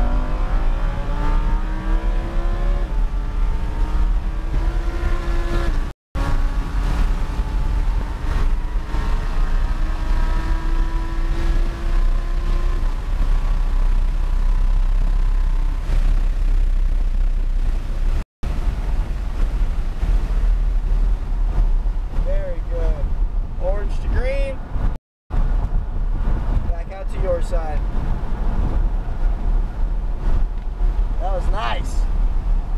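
Lamborghini Huracán LP610-4's 5.2-litre V10 at full throttle, heard from inside the cabin, its note climbing through the gears while wind and road noise build at top speed. Near the end the engine note swoops up and down as the car backs off and downshifts under braking. The sound cuts out briefly three times.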